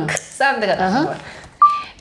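A single short electronic beep at one steady pitch, about one and a half seconds in, starting sharply and louder than the speech around it.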